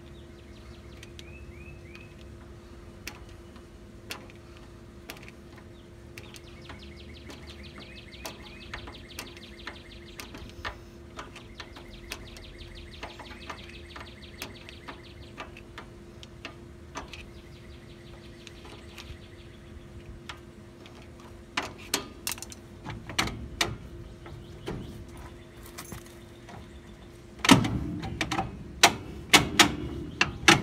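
Star-wheel adjuster of a 1969 Chevy C10 front drum brake turned with a screwdriver through the backing-plate slot, giving runs of small metallic clicks, several a second, as the shoes are backed off. From about two-thirds of the way in come louder metal knocks and clunks, loudest near the end, as the drum is worked loose over the shoes.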